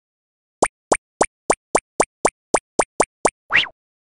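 Cartoon pop sound effects for an animated logo: eleven quick plops, each a short upward blip, at about four a second, then one slightly longer rising sweep near the end.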